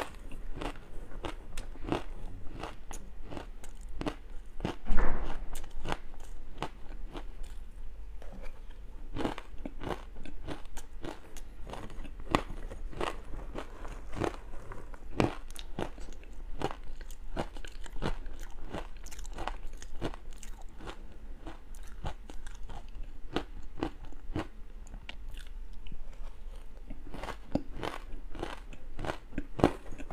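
Close-miked biting and chewing of powdery frozen matcha ice: a dense, continuous run of small crisp crunches, with one louder crunch about five seconds in.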